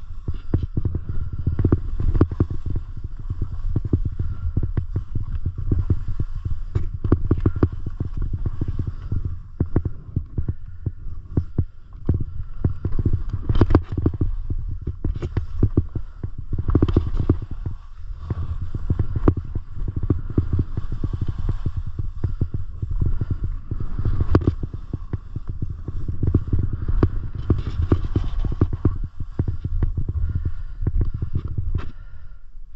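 Skis scraping and chattering over thin, tracked snow while skiing downhill, with wind rumbling on the camera microphone. Irregular clicks and scrapes of the ski edges go on throughout, with a few louder strikes about halfway through.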